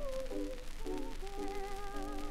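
A soprano voice and accompaniment played back from a 1925 HMV 78 rpm shellac record: a held note with vibrato slides down, a short phrase of accompaniment follows, then the voice holds another note with vibrato. Light surface clicks and crackle from the disc run underneath.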